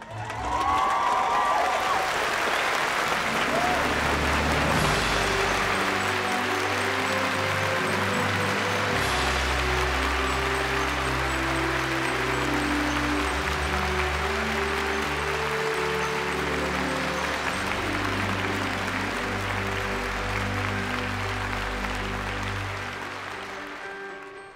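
A large audience applauding steadily, with music of sustained low chords underneath. The applause comes in suddenly about half a second in and fades near the end.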